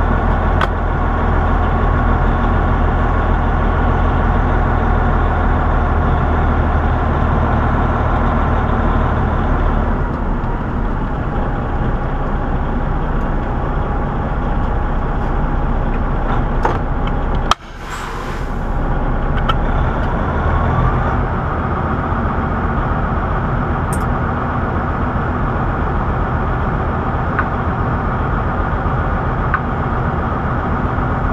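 Semi truck's diesel engine running steadily, heard from inside the cab. About 17 seconds in there is a sudden short hiss of air.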